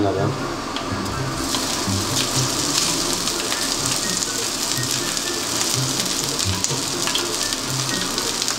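Hot oil and browned garlic sizzling in a frying pan as cooked rice is tipped in. The crackling sizzle swells about a second and a half in and holds steady.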